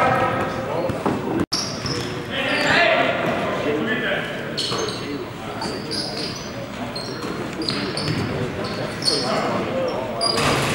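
Live basketball play in a gym: the ball bouncing on the hardwood court and players' voices echoing in the large hall, with a brief dropout of all sound about a second and a half in.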